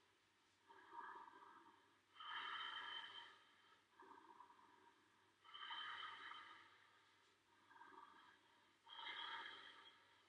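A man breathing faintly and slowly through three cycles, each a short, soft breath followed by a longer, louder one, paced to a yoga leg-raising exercise.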